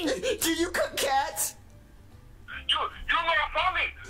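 Speech: a voice talking in two short stretches, with a pause of about a second in the middle.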